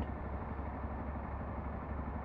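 Motorcycle engine idling while stopped, a steady low hum.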